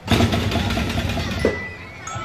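Drumblek percussion ensemble of plastic barrel drums and metal cans playing a fast, dense rhythm that starts suddenly, with one sharper hit about one and a half seconds in.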